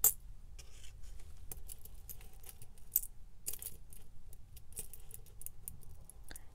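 Small clear plastic bead pots clicking as they are picked up and set down among one another, with seed beads rattling inside: a sharp click at the very start, another about three seconds in, and lighter scattered clicks between.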